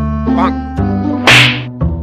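Background music with a steady beat, and one short, loud splash about a second and a quarter in as a person dives into a pond.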